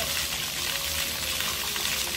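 Ground-level water jets of a splash-pad fountain spraying, a steady rush of water.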